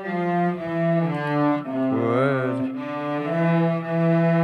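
Student cellos bowing a slow line of long, sustained notes together, the pitch stepping to a new note every half second to a second, with one wavering note about halfway through.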